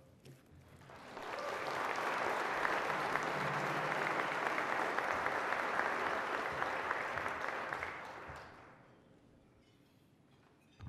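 Audience applauding, swelling in over about a second, holding steady, then dying away near the end.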